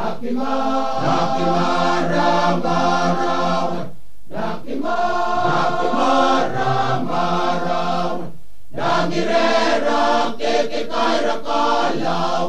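Male choir singing in several-part harmony, with a low bass part held beneath the melody. The phrases break off briefly twice, about four seconds in and again about eight and a half seconds in.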